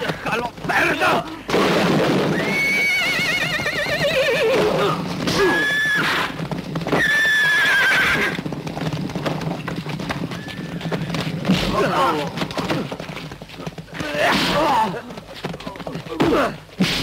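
Horses whinnying: a long quavering whinny about two seconds in, then two shorter ones, over hooves moving about and men grunting as they fight.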